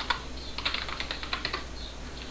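Computer keyboard being typed on: a quick, irregular run of key clicks over a steady low hum.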